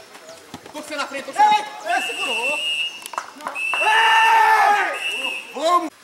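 Players shouting on an outdoor football pitch, over two long blasts of a referee's whistle about a second in length and nearly two seconds in length, the second joined by a long held shout. The whistle is typical of the full-time whistle ending the match.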